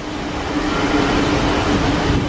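Steady rushing background noise with a constant low hum, the ambience of a cruise ship's open pool deck, where air movement and the ship's ventilation machinery run without pause.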